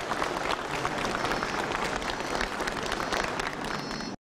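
A large crowd applauding, many hands clapping steadily.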